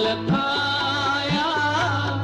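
Sikh kirtan: a held, wavering vocal line over the steady sustained chords of a harmonium, with tabla strokes whose low pitch slides upward twice.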